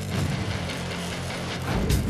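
Arc welding crackling and sputtering under background music with a low, steady bass line. The crackle swells louder near the end.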